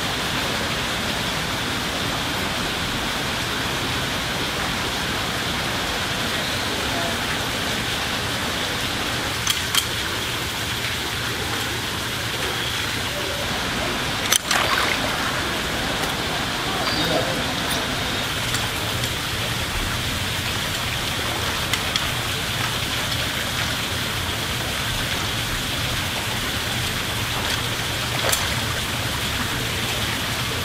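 Steady rush of a small waterfall pouring into a pool, with a few sharp splashes as gharials snap at fish in the water. The loudest splash comes about fourteen seconds in.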